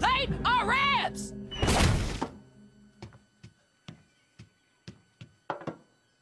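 Cartoon sound effects: a loud rushing burst about two seconds in, then a string of short, faint knocks and clicks at uneven intervals.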